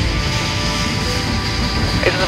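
Eurofighter Typhoon's twin jet engines running steadily on the ground: a continuous rushing noise with a high, steady whine over it.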